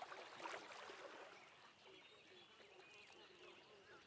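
Near silence: a faint water sound fading away in the wake of a cartoon dive splash.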